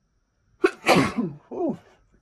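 A woman sneezing from an allergy fit: a sharp catch about two-thirds of a second in, then one loud sneeze falling in pitch, followed by a short voiced sound.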